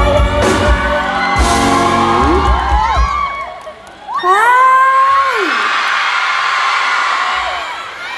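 A live band with drums and a singer plays the last bars of a song, ending about three and a half seconds in. The audience then cheers, with high screams that rise and fall.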